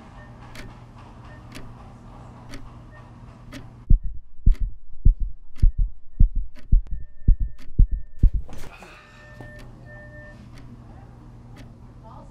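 Clock ticking about once a second over a low hum. About four seconds in, a loud, fast heartbeat comes in, beating in quick double beats for about five seconds, then cuts off and leaves the ticking. The racing heartbeat stands for the character's anxiety.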